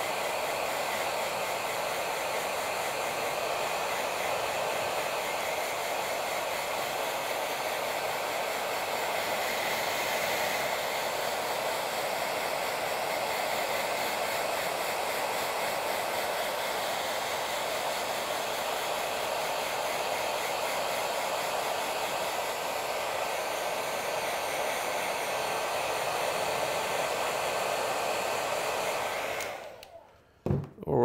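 Handheld hair dryer running steadily with an even rushing blow, switched off just before the end.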